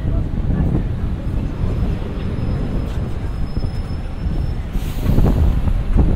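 Steady low rumble of city street traffic as a red double-decker bus drives past close by, with a faint high whine for a few seconds in the middle.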